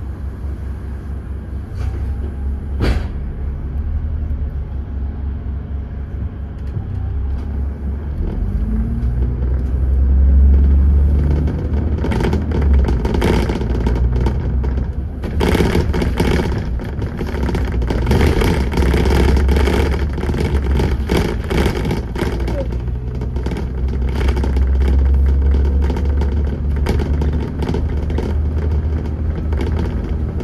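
Alexander ALX400-bodied Dennis Trident 2 double-decker bus heard from on board, its engine running with a deep rumble that swells about ten seconds in as the bus pulls away. From about twelve seconds there are many small knocks and rattles.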